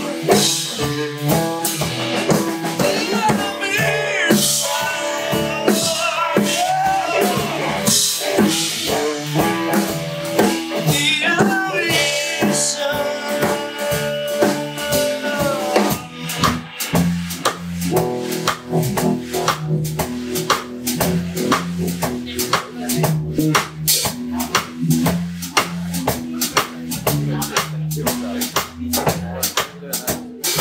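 A live blues trio playing: a Stratocaster-style electric guitar solos with bent notes over bass guitar and drum kit. About halfway through, the guitar drops out and the bass and drums carry on alone, the drums keeping a steady beat.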